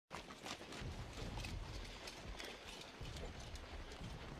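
Horses' hooves on a dirt road as several riders come up at a walk: irregular soft thuds and clicks over a low rumble.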